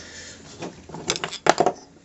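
A few short, sharp clicks and knocks of plastic paint pots being handled and set down on a wooden table, about a second in and again half a second later.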